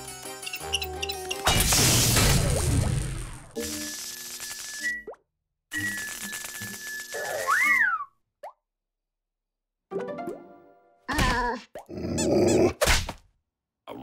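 Cartoon soundtrack: comic music and sound effects, with a loud noisy crash about two seconds in. The music then cuts off abruptly, leaving silent gaps in the dark, and short comic sound effects pop up near the end.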